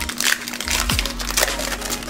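Trading card pack wrapper crinkling and tearing as it is ripped open by hand, in a few short crackles, over background music.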